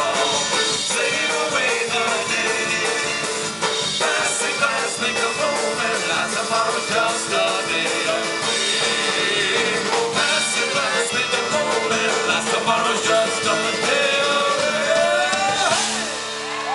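Live Celtic rock band playing an instrumental passage: fiddle over strummed acoustic guitar, electric bass and drum kit. A rising glide comes near the end as the song closes.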